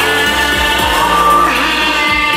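A man singing into a microphone through a PA, over a loud backing music track, holding long notes.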